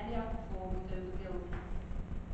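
A person talking indistinctly over a steady low rumble of room and microphone noise.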